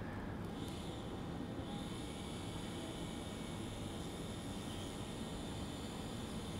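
Low-speed otological micro drill with a 0.7 mm diamond burr running steadily as it drills through the anterior crus of the stapes. It makes a faint, thin, steady whine that sets in under a second in.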